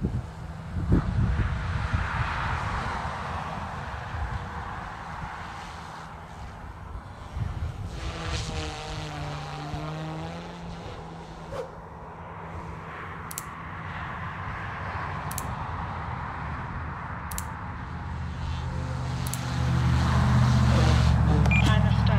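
An OMPHOBBY M2 V2 electric micro RC helicopter in flight: the electric motors whine and the rotor blades whir. The sound swells and fades as the helicopter moves about, and it grows louder over the last couple of seconds.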